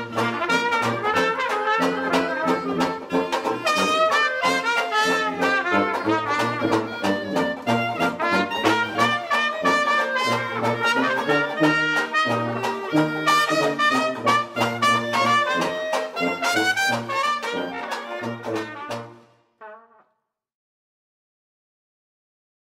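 Traditional jazz quartet of clarinet, trumpet, banjo and tuba playing, with the tuba's bass notes and strummed banjo chords under the horns. The tune ends with a final note that fades out about 19 to 20 seconds in, leaving silence.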